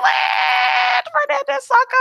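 A person's voice holding one high, steady note for about a second, a drawn-out squeal-like exclamation, followed by a few quick spoken syllables.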